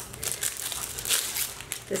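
Packaging rustling and crinkling as hands dig an item out of a subscription box: an irregular rustle with many small crackles.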